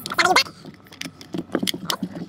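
Irregular sharp clicks and light knocks of a plastic blower-fan housing being handled and set down on carpet, with a brief voice just after the start.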